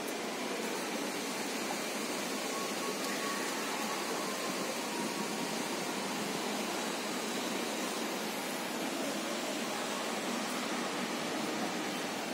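Steady ambient background noise of a city shopping arcade, an even hiss-like hum without distinct events, typical of distant traffic and ventilation.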